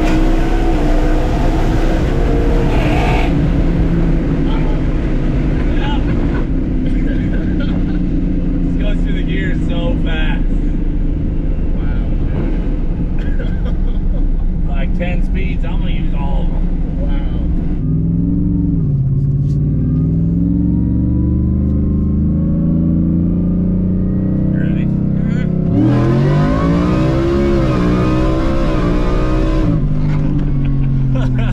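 Whipple-supercharged Ford F-150 engine heard from inside the cab, running and revving under hard acceleration, its pitch climbing and falling several times and rising most steeply near the end.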